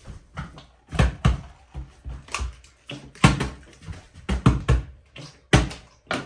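Plastic water bottle being flipped and landing on a tabletop again and again: a string of irregular thuds and knocks, sometimes two in quick succession, as it bounces and topples.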